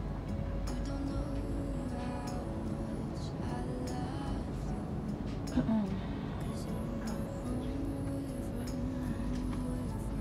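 Music with a slow, held melody over a steady low hum.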